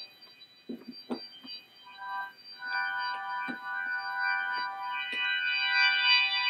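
Software organ from MainStage's Classic Rock Organ patch, played from a MIDI keyboard, holding a steady chord that comes in about two seconds in and fills out with higher tones a second later. Before the chord, a few soft clicks from the controller's keys and faders.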